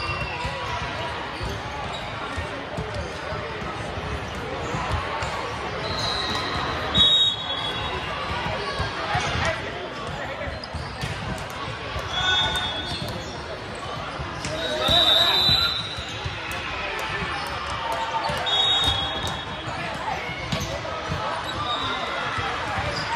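Indoor volleyball hall ambience: many voices talking and calling, and volleyballs being hit and bouncing on the hardwood court, echoing through the large gym. Short referee whistle blasts sound several times, about six seconds in, then around seven, twelve, fifteen and eighteen seconds.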